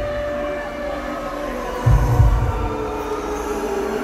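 Pre-show intro track over a concert PA: a sustained drone that slowly sinks in pitch, with one deep, heartbeat-like boom about two seconds in.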